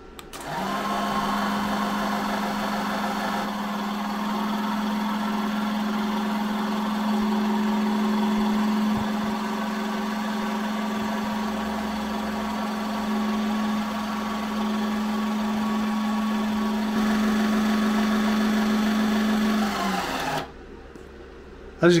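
E-Heelp 12 V electric hydraulic jack's motor and pump running with a steady hum as the unloaded ram extends to full length, with small jumps in level where the footage has been cut. The hum stops about two seconds before the end, once the jack reaches maximum height.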